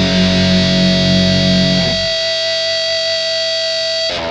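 Distorted electric guitar holding a sustained chord at the close of a hardcore punk track. The low end drops away about halfway through, leaving the guitar ringing on its own.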